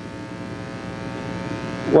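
Steady electrical buzz: a hum with many evenly spaced overtones, lying under the recording. A man's voice comes in right at the end.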